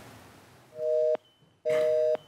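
Telephone busy tone on the studio phone line. Two steady beeps, each about half a second long and made of two tones: the first comes about three-quarters of a second in, the second near the end. It is the sign that the call has been cut off, which the host takes for the other end having hung up.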